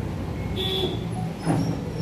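A steady low rumbling hum, with a single short knock about one and a half seconds in.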